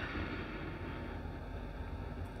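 Steady low background noise between spoken phrases: room tone with a faint even hiss and no distinct events.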